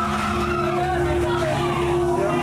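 Haunted-attraction sound effects playing through speakers: a steady held drone with wavering, gliding squeals over it.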